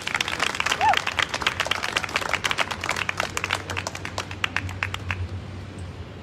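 An audience applauding by hand, the clapping thinning out and stopping about five seconds in, over a low steady rumble.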